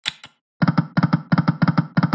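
Slot-machine game sound effects from a spin of EGT's 5 Burning Hot: a sharp click as the spin starts, then about a second later five quick groups of short clunks, one group for each of the five reels stopping in turn.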